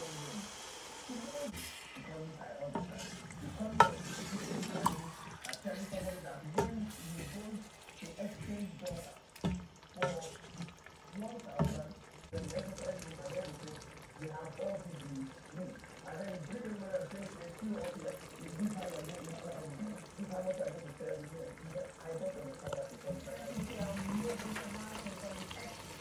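A spoon stirring soup in a metal pot: liquid sloshing, with scattered clicks of the spoon against the pot.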